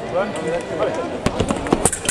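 Sabre fencers' attack: a quick run of sharp clicks and knocks in the second half, from feet striking the metal piste and blades clashing, over background chatter in the hall.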